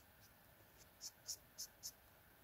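Copic Sketch alcohol marker brushing over sketchbook paper: short, quiet, scratchy strokes, four quick ones in the second half, about four a second.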